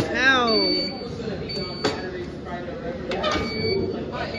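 Short, high electronic beeps about once a second from a commercial waffle baker's countdown timer, signalling that the waffle's baking time is nearly up. A person gives a drawn-out "ooh" at the start, there is a sharp click about two seconds in, and cafeteria chatter runs underneath.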